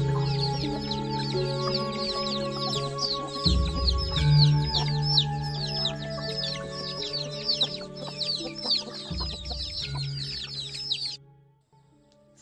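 Chicks peeping steadily in short falling peeps, about three a second, over background music with long held notes. Both cut off suddenly about a second before the end.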